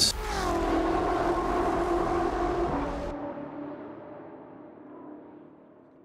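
BMW M8 GTE race car's twin-turbo V8 going by, its pitch dropping in the first moment as it passes. About three seconds in, the sound is cut short and a low hum fades away.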